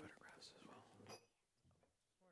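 Faint, quiet talk between people away from the microphone, dropping to near silence after about a second, with a brief faint voice again near the end.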